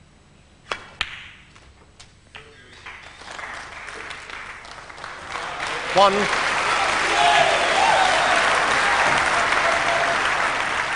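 A snooker cue strikes the cue ball, followed by several sharp clicks of balls colliding. Audience applause then builds from about three seconds in and grows loud, greeting a fine shot. A referee calls the score at about six seconds.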